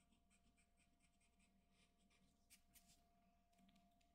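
Near silence with a few faint, light scratches of a graphite pencil on paper, the clearest about two and a half seconds in and again near the end.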